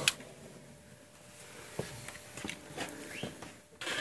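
Handling noise: a few scattered light clicks and knocks, with a short rustle near the end.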